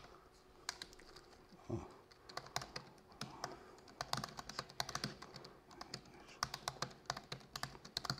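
Typing on a laptop keyboard: quick, irregular key clicks in short runs with brief pauses between words, fairly faint.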